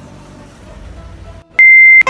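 Quiet background music, broken off about one and a half seconds in by a very loud, steady, high-pitched electronic beep that holds for under half a second.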